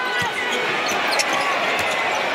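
A basketball being dribbled on a hardwood court, with short sneaker squeaks, over the steady noise of the arena crowd.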